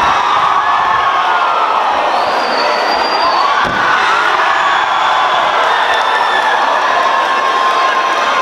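Fight crowd cheering and shouting steadily and loudly, many voices at once. A single thump comes about halfway through.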